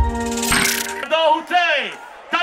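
Intro jingle's sustained chord rings out with a bright high shimmer. About a second in, a man's voice over a concert PA calls out twice, the second call sliding down in pitch.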